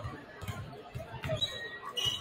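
Several basketballs bouncing on a hardwood gym floor during warm-up dribbling, with irregular overlapping thumps a few times a second, over a background of crowd chatter.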